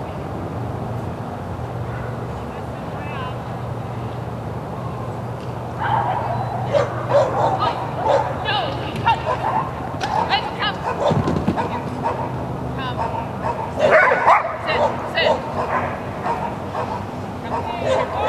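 A Belgian Sheepdog barking and yipping repeatedly while running an agility course, in many short calls from about six seconds in, loudest near the end.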